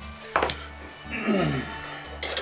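A single sharp knock as a metal strip of mandolin tuners is set down on a workbench mat, over steady background music.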